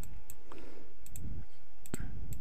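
Several computer mouse button clicks, two in quick succession near the end, over a steady low background hum.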